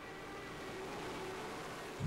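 Faint, steady running of Caterpillar heavy equipment, heard as a low, even noise with a faint hum that grows slightly louder.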